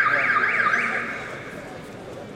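Electronic alarm tone warbling up and down about four times a second, stopping about a second in and fading out.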